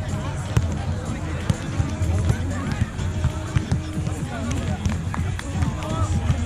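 Background music and distant voices over a steady low rumble, with a few short, sharp knocks scattered through.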